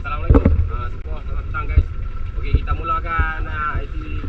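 People talking, with a steady low wind rumble on the microphone underneath.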